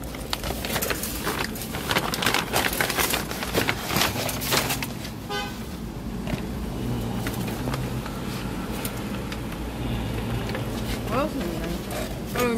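A paper bag and clear plastic food containers rustle and crinkle as they are handled, in quick crackles through the first several seconds. A steady low hum from a nearby car engine follows, with a short high tone about five seconds in.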